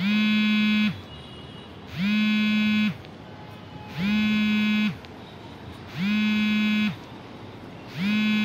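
An electronic buzzer or alarm sounding a low buzzing tone in a steady on-off pattern, about one second on and one second off. It sounds four times, and a fifth buzz starts right at the end.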